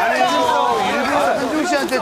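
Several people's voices talking and exclaiming over one another.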